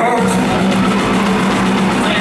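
Live rock band playing, with a steady low note held through.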